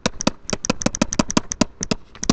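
A stylus tapping and scratching on a pen tablet as the expression is handwritten: a quick run of short clicks, about eight a second.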